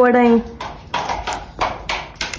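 A voice speaks a short word, then a second and a half of soft, scattered knocks and rustles.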